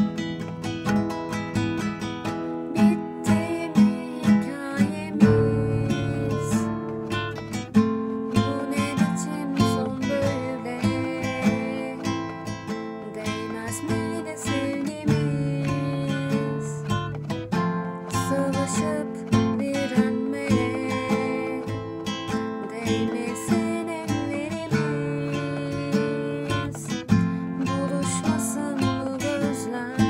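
Acoustic guitar strummed in a steady rhythm, about two strokes per chord, changing chords every second or two through a minor-key progression of A minor, D minor and F.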